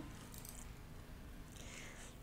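Quiet room tone with a faint low hum, broken by a brief soft hiss about half a second in and another near the end.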